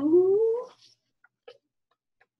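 A woman's voice holding a long, rising vowel, the word 'two' drawn out, which ends under a second in. A faint click follows about a second and a half in.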